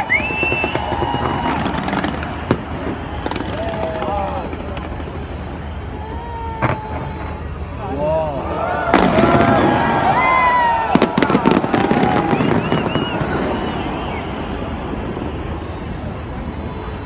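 A fireworks display: several sharp bangs, with whistling glides and crackling between them, heard through people's voices.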